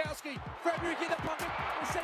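Faint radio-style football commentary, a man's voice talking quickly over background noise, played back from an AFL highlight clip.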